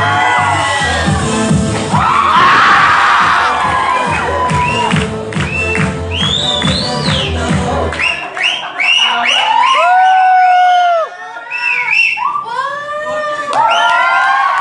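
Dance music with a heavy beat playing over a crowd that shouts and cheers. About eight seconds in the beat stops, and the audience carries on whooping and cheering.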